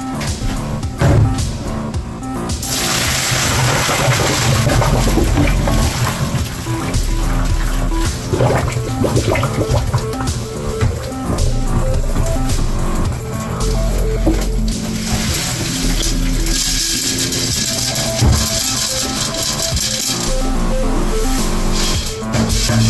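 Hot water and boiled brown rice poured from a stainless steel pot into a mesh strainer over a steel sink, splashing and rushing down the drain. The pour starts about three seconds in and runs on with a short break near the middle. Background music plays under it.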